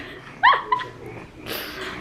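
Baby girl giving one short, high-pitched squeal that rises in pitch, followed about a second later by a brief breathy puff.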